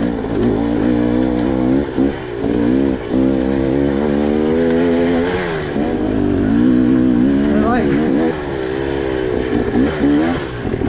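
KTM 300 two-stroke dirt bike engine pulling through tight singletrack in second gear. The throttle rolls on and off, so the revs rise and fall, with a quick rev-up about three-quarters of the way through.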